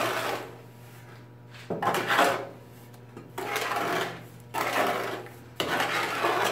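Trowel scraping and stirring a wet, sloppy sand-and-cement mortar in a plastic tub, in about five separate strokes.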